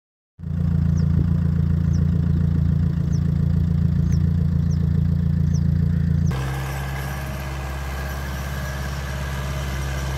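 Steady hum of a motor vehicle's engine running. Just past six seconds it changes abruptly to a quieter hum at a different pitch.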